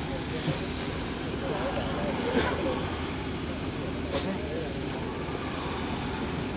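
A group of people doing a breathing drill together, drawing air in through the nose and blowing it out through the mouth: a soft, steady hiss of breath over outdoor background noise.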